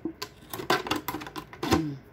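Scissors cutting through a thin plastic PET bottle: a quick, irregular series of sharp snips and plastic crackles.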